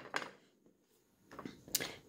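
Mostly quiet, with a few faint handling clicks and a short sharp tap near the end, from hands picking up raw stuffed chicken thighs on a plastic-covered table.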